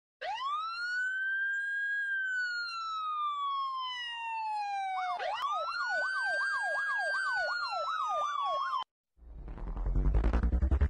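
Siren sound: one long wail that rises and then slowly falls. About halfway through, a second wail starts with a fast yelp warbling over it, about two to three sweeps a second. Both cut off suddenly near the end, and music starts to build.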